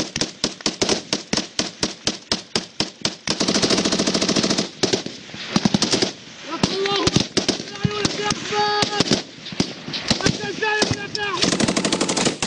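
Machine gun firing long automatic bursts at about six shots a second. The fire breaks off about halfway through while men shout, then starts again near the end.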